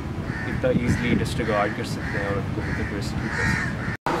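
A man speaking, with crows cawing over and over in the background.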